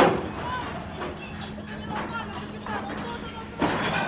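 A loud bang right at the start and a second one about three and a half seconds in, over a steady low hum, with short voices or calls in between.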